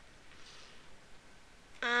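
Near-silent room tone with a faint soft hiss about half a second in; a voice begins a drawn-out word near the end.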